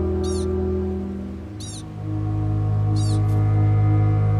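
A pika calling three times, about a second and a half apart; each call is a quick run of high, falling chirps. Steady, low documentary music plays underneath.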